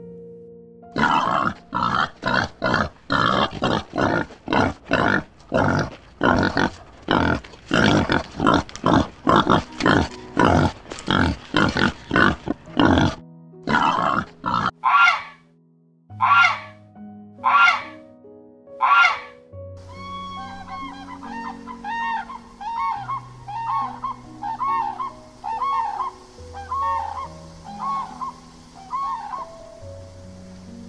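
Soft background music under a series of animal calls: a fast run of loud calls, about two a second, for some twelve seconds, then five or six spaced single calls of a Canada goose, then softer repeated calls that rise and fall, about one a second.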